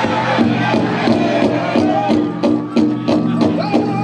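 Powwow drum group playing a fancy dance song: the big drum struck in a steady beat, about three strikes a second, under men's voices singing held, high notes together.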